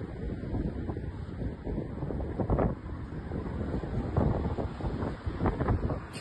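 Wind buffeting a phone's microphone: a low rumble that swells in gusts, several times.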